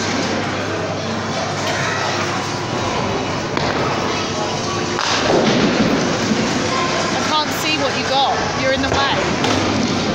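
Busy amusement-arcade ambience of background chatter, machine music and game noise, with a sharp thump about halfway through and warbling electronic tones near the end.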